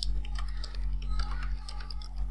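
Computer keyboard keys clicking in quick, irregular strokes as a line of code is typed, over a steady low hum.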